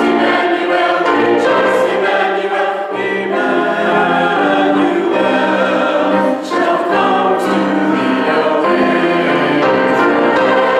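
Church choir singing a hymn in sustained phrases with grand piano accompaniment, with brief breaks between phrases about three seconds and six and a half seconds in.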